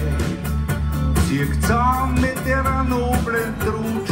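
Live band with drum kit, bass and guitars playing a steady beat, and a lead melody bending in pitch through the middle.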